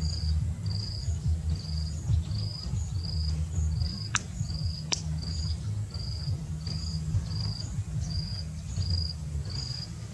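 Insect chirping at a steady, even pace, about one and a half chirps a second, over a continuous low rumble. Two sharp clicks come about halfway through.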